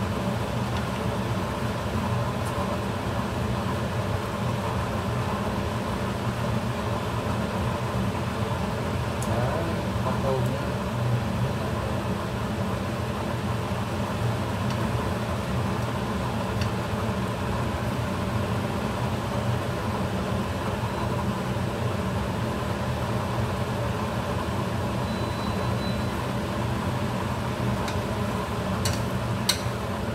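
Kitchen range hood fan running steadily with a low hum, over shrimp frying in a stainless steel pan and being stirred with chopsticks. A few light clicks near the end.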